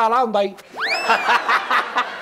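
Men laughing after a short spoken phrase: a high, sharply rising whoop about three quarters of a second in, then a second of hearty laughter.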